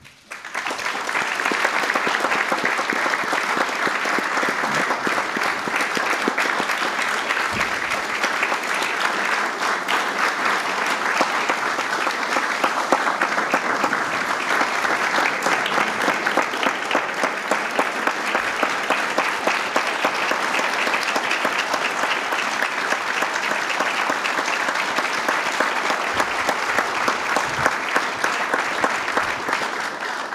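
Large audience applauding: dense, steady clapping that starts about half a second in, holds at an even level, and dies away near the end.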